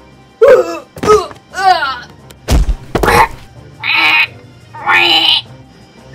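A voice crying out three times with sliding pitch, then two heavy thuds about half a second apart, then two short hissing bursts.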